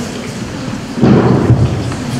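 Rustling, rumbling handling noise as twig stems are pushed and worked into floral foam in an urn, with a louder surge lasting about half a second a second in.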